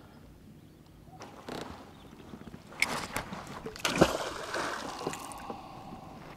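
Water sloshing and splashing against a kayak hull, with sharp knocks on the boat about three and four seconds in as gear is moved about.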